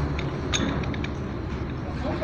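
Steel gears on a GB 40 gearbox main shaft being worked by hand, giving a few short metallic clicks and knocks in the first second, over a steady low hum.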